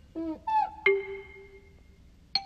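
Cartoon sound effects: two short pitch-sliding tones, the first falling and the second bending up then down, then a single bell-like ding just under a second in that rings on and fades.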